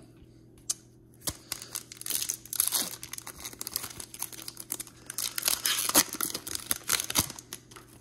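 Wrapper of a hockey card pack being torn open and crinkled by hand: a rapid crackling that starts about a second in and keeps going for several seconds.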